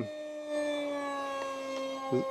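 Electric RC jet's brushless outrunner motor (2212, 2700 Kv) and 6x3 propeller whining in flight: a steady tone with overtones that slowly falls in pitch.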